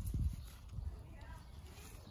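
Soft low thuds and rustling of a gloved hand pressing and patting loose garden soil, strongest in the first half second and then fading off.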